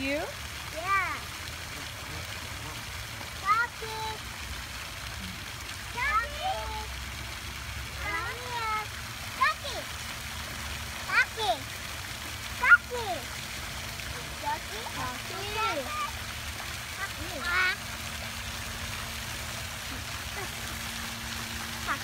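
Short calls that rise and fall in pitch, one every second or two, over the steady rush of a splashing pond fountain.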